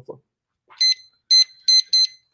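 Four short, high electronic beeps, unevenly spaced, starting a little under a second in.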